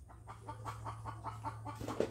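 Chickens clucking faintly in the background over a low steady hum.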